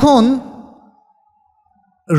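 A man's lecturing voice finishing a word, then a pause of near silence lasting about a second and a half.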